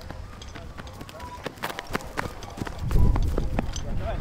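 Running footsteps on grass with sharp clacks, typical of the metal coupling heads on rolled fire hoses knocking as they are carried, among background voices. A loud low rumble comes in near the end.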